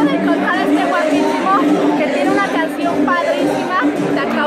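Chatter: people talking over one another, with music or held tones underneath.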